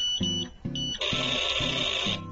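A toy 'electric pot' rice cooker's steam effect: high electronic beeps, then about a second in a steady hiss starts as the cooker puffs out its mist, over children's background music.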